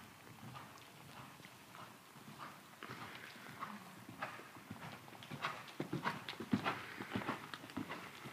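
Hoofbeats of a Friesian–Belgian cross mare trotting on the arena's sand footing, a run of soft thuds that grows louder over the second half as she comes close.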